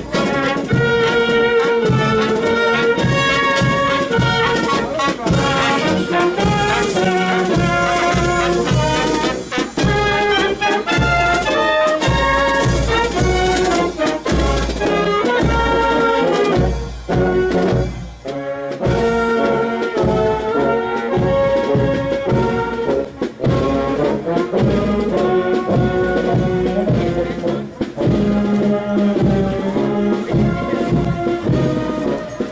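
Brass band music, with low brass and higher melody notes playing on without a break except for a short dip about seventeen seconds in.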